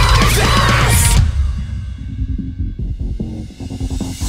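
Heavy rock song with shouted vocals over distorted guitars and drums. About a second in, the band drops out, leaving only a low, pulsing bass.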